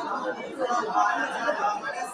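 Several men's voices going on at once, overlapping with no pause.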